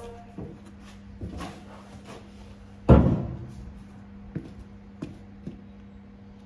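Cast-iron Chrysler 340 engine block set down on a steel platform scale with one heavy thud about three seconds in, among a few lighter knocks and scuffs. A steady low hum runs underneath.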